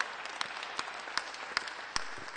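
Applause from a small group, a steady patter of hand claps with one sharp clap standing out about two or three times a second.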